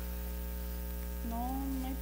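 Steady electrical mains hum, with a drawn-out vocal hesitation, a held "eh" on one pitch, starting a little past halfway.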